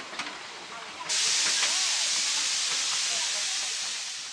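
Miniature steam locomotive blowing off steam: a loud, steady hiss that starts suddenly about a second in and holds.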